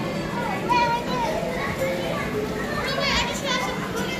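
Many children's voices chattering and calling out at once in a busy indoor play area, with a high-pitched child's call a little after three seconds in.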